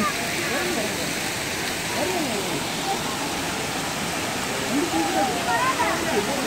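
Steady rush of falling water from a waterfall, with faint voices of people in the background.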